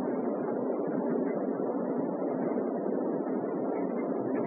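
Steady hiss of background room noise with no speech, even in level.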